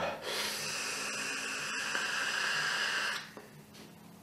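A long drag on a top-airflow sub-ohm vape tank: a steady hiss of air pulled through the tank's airflow and coil for about three seconds, then stopping.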